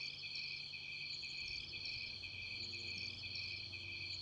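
Crickets chirping in a steady, evenly pulsing chorus, with a faint low hum underneath.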